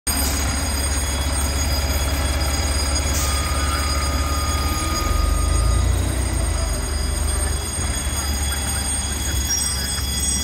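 Heavy fire rescue truck's diesel engine running as it drives slowly past on wet pavement, its low rumble loudest about five to six seconds in. A faint thin steady tone sounds for a couple of seconds in the middle.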